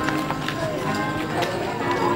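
Group singing of a Marian hymn with musical accompaniment, held notes running on, and a few light clicks.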